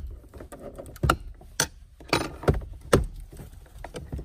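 Plastic retaining clips and tabs of a Subaru Crosstrek's center console trim popping loose as the panel is pried up: several sharp clicks and snaps, with rustling of the trim and shift boot between them.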